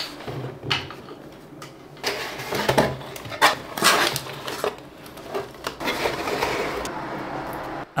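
Cardboard box being handled and opened, its flaps and sides rubbing and scraping, with several light knocks as the filament spool inside is moved.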